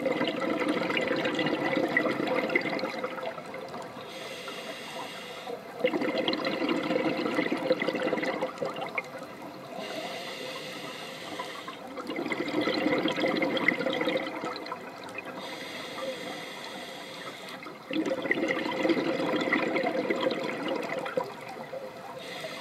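Scuba regulator breathing heard underwater: four long exhalations of rushing, bubbling air, about every six seconds, each followed by a quieter, higher hiss of inhalation.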